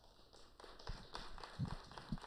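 Sparse clapping from a small audience, many quick individual claps building up over a light hiss, with a few heavier thumps.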